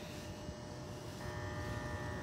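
Faint, steady outdoor background hum with no distinct events; about halfway through, a faint steady whine joins it.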